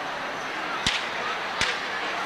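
Starter's pistol for a sprint race: two sharp cracks about three quarters of a second apart, over a steady crowd murmur.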